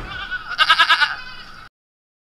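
Cartoon sound effect from a logo animation: a rapidly warbling, animal-like cry about half a second in, then the audio cuts off abruptly near the end.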